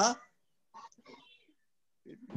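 Speech only: the end of a spoken "yeah", then a few faint, brief murmured words over a video call.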